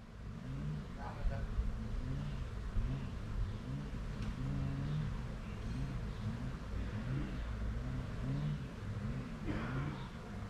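Honeybees buzzing around the microphone, the pitch rising and falling again and again as individual bees fly past.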